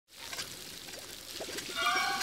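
Patties sizzling on a griddle: a steady frying hiss with scattered small crackles that grows louder. Music comes in near the end.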